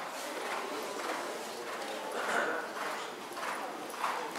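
Hoofbeats of a horse trotting on sand arena footing, in a regular two-beat rhythm.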